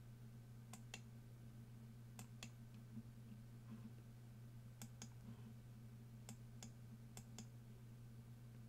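Faint clicking at a computer, five quick pairs of clicks spread across the stretch, over a low steady hum.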